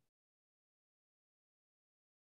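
Near silence: the call's audio is essentially dead.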